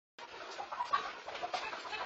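A chicken clucking in a run of short calls.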